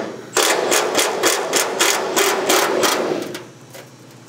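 Air ratchet running in short rapid strokes with a hissing air exhaust, loosening the hood hinge bolts so the hood can be realigned. It runs for about three seconds and stops shortly before the end.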